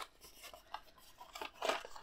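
Faint rubbing and scraping of a thin cardboard box as its end flap is pulled open and the lid is lifted back, with a light tick about three quarters of a second in and short scratchy rustles near the end.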